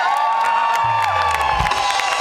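Live band holding a sustained note, with a low bass note sounding midway, over an audience cheering and clapping.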